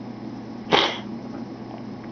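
A short, sharp breath drawn in about three-quarters of a second in, over a faint steady low hum.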